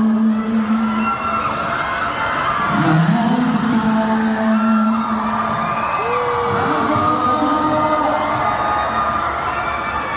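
Male voices singing a slow song live into handheld microphones over music, holding long notes and gliding between them, with fans whooping and cheering.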